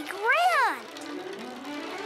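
A young girl's sing-song voice, one rising-and-falling call lasting under a second, then soft background music.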